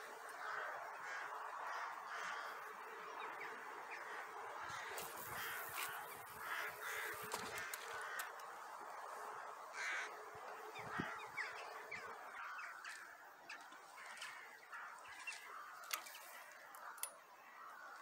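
Many birds calling at once in a steady chorus of caw-like calls, with a few scattered clicks and a dull knock about eleven seconds in.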